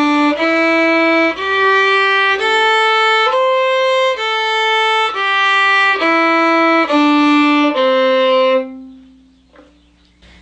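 Solo fiddle bowing the C major pentatonic scale, one note about every second, stepping up and then back down. It ends on a long held low note that fades out.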